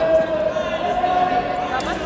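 Indistinct talking of voices in a large sports hall, with one sharp knock about two seconds in, near the end.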